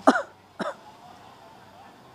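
A person's voice: two short, loud vocal bursts, the first right at the start and the second about half a second later.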